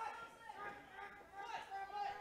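Faint crowd chatter: a low murmur of voices.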